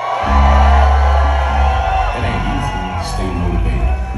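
Concert crowd cheering and whooping as loud, bass-heavy music starts through the venue's sound system, the bass cutting in suddenly about a quarter second in.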